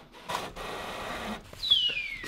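Office printer running as it feeds out a printed sheet, a steady whirr through the first half. About a second and a half in, a falling whistling tone glides down in pitch.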